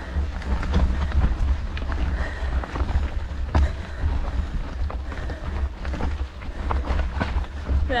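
Low rumble of wind buffeting the camera's microphone, with scattered clicks and crunches of mountain bike tyres on loose gravel and stones during a steep uphill climb.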